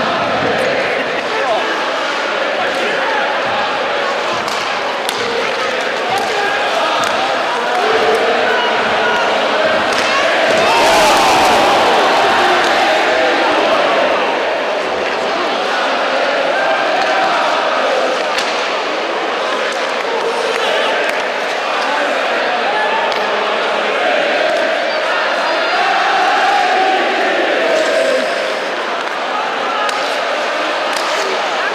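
Ice hockey in play: a crowd's voices throughout, with repeated sharp clacks of sticks and puck and thuds against the boards. The crowd swells about eleven seconds in.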